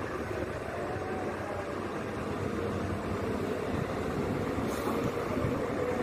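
Rail track maintenance machines, a ballast regulator and a tamping machine, running steadily as they travel slowly along the track.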